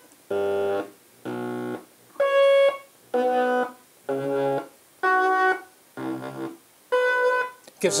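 Eurorack synthesizer voice run through a Zlob Modular Foldiplier wave folder, playing a sequence of short notes, roughly one a second, at changing pitches. The brightness of the notes shifts from one to the next as the folding is modulated.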